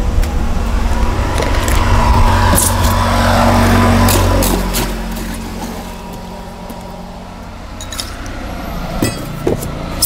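A motor vehicle passing close by: a low engine rumble that swells and then fades about four and a half seconds in. A few sharp clinks follow near the end, as ice goes into a glass.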